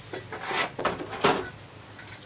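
A few short knocks and clanks of metal grinder tool-rest parts being handled and set down, the loudest about a second in.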